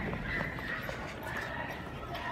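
Footsteps on a hard floor while walking, with faint voices in the background.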